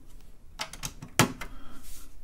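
Plastic keycaps being pushed onto the key switches of a TRS-80 Model 4 keyboard and pressed down: a quick run of sharp clicks and taps, the sharpest about a second in.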